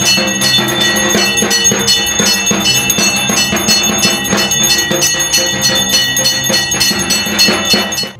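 A hand bell rung rapidly and without pause, several strikes a second, its ringing tones held throughout, over steadier lower musical tones; it stops abruptly at the end.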